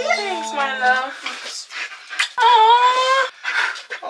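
A curly-coated dog whining in high, wavering cries, in a few bouts with the longest and loudest about two and a half seconds in. It is jumping up toward a birthday cake held just above it.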